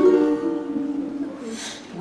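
Live ukulele and guitar accompaniment to a jazz-age pop song. Notes are held through the first second and a half and then die away into a brief lull before the next phrase.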